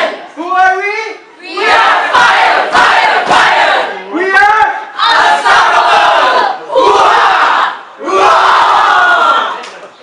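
A group of children shouting a team chant together in a string of loud, short shouts, each one to two seconds long with brief pauses between.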